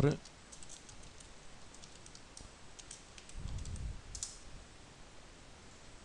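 Scattered computer keyboard keystrokes and clicks, faint and irregular, with a soft low thump about three and a half seconds in.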